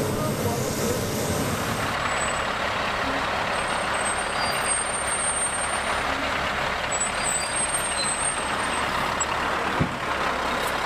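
Military 6x6 tactical truck driving off a hovercraft landing craft's ramp onto sand, its diesel engine running under a steady rushing noise that comes up about two seconds in.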